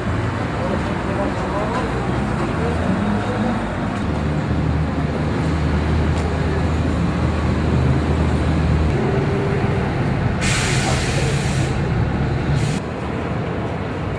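Street noise with a vehicle engine idling in a steady low rumble and people talking in the background. About ten seconds in there is a burst of hissing lasting about a second, and a shorter hiss about two seconds later.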